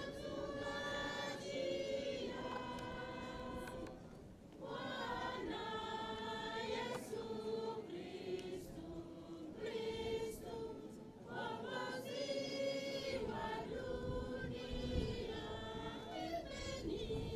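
A choir of voices singing a slow hymn in long held phrases, with brief breaths between phrases about four seconds and about eleven seconds in.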